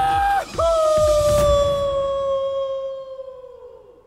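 A man's yell as he jumps and falls: a short cry, then one long held shout that sinks a little in pitch and fades away over about three seconds.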